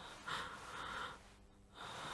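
A woman breathing heavily, with two long breaths a little under a second apart.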